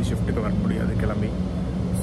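A man talking over a steady low mechanical hum.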